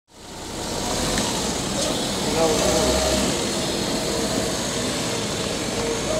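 Steady background hiss with faint, indistinct voices.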